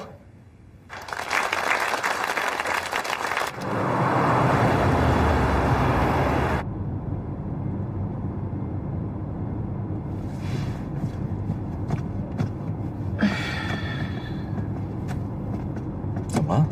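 Audience applauding, growing fuller about three and a half seconds in, then cut off suddenly by the steady low rumble of a moving car heard from inside the cabin.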